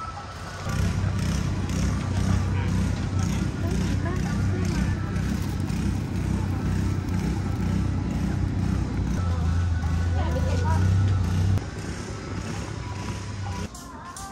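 A steady low engine-like drone under distant voices and faint music, stopping abruptly near the end.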